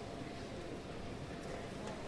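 Low, indistinct murmur of people talking in a large hall, over steady room noise, with a faint click or two.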